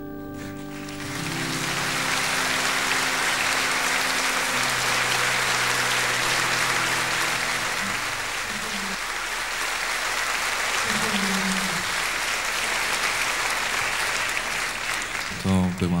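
Concert audience applauding at the end of a song, the clapping swelling in about a second in and holding steady. The accompaniment's last held low notes fade out beneath it over the first several seconds, and a man's voice comes in just before the end.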